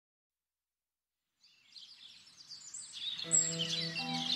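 Silence, then a background track fading in about a second and a half in: birdsong chirps, joined about three seconds in by soft, held music notes.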